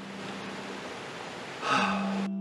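Steady outdoor background hiss with a faint low hum, then a man's short breathy sigh near the end.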